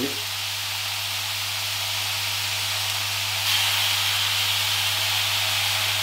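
Thinly sliced marinated beef sizzling in a hot oiled pan, a steady hiss that grows a little louder about three and a half seconds in.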